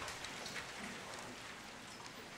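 Quiet room with faint scattered clicks and light rustling, such as handling and small movements near a lapel microphone.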